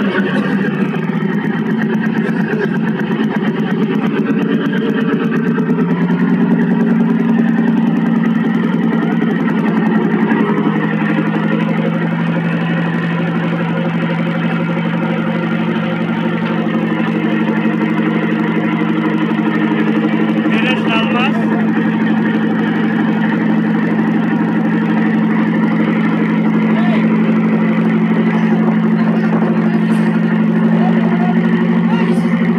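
A fishing trawler's engine running steadily: a low, even drone that does not change in pitch.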